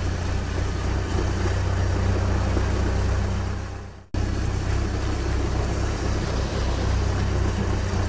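Vehicle engine sound effect running as a steady low rumble. It fades out about four seconds in and then cuts back in abruptly.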